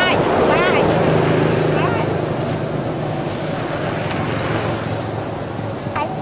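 A steady low motor hum runs under a noisy background. A few short, high warbling calls come near the start and again about two seconds in.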